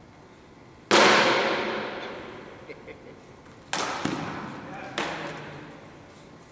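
Steel swords clashing: one loud blade-on-blade strike about a second in that rings and echoes off the hall walls, then three quicker strikes around four and five seconds, each ringing out.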